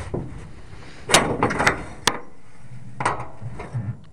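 A loose length of metal pipe being picked up and handled in a pickup bed, knocking and scraping against the bed: three sharp knocks between about one and two seconds in and another about three seconds in.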